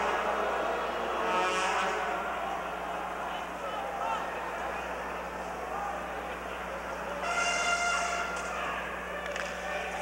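Hockey arena crowd murmuring during a stoppage, with a horn sounding a steady held note for about a second near the end and a shorter one about a second and a half in.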